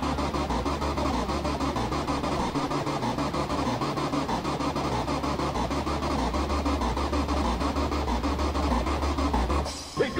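Gabba hardcore techno off a 1994 rave cassette recording: a fast, steady, harsh distorted beat over deep bass and dense noise. It drops out briefly just before the end.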